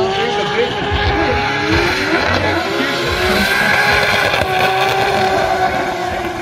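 Drift car sliding sideways at full throttle: the engine is held high in the revs with its pitch wavering as the throttle is worked, over steady tyre squeal from the spinning rear wheels.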